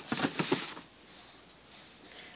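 Rustling and a few light knocks of boxed craft-punch packaging being handled, bunched in the first half second or so.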